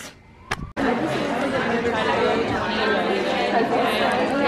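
Crowd chatter: many students talking at once in a large, echoing lecture hall. The babble starts abruptly just under a second in, after a brief near-quiet moment with a single click.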